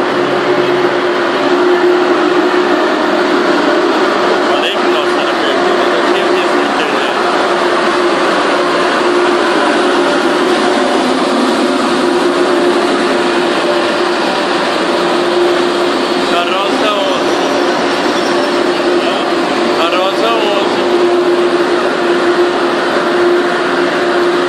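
Frecciarossa high-speed train pulling into a station platform: a steady loud rush of train noise with a held hum.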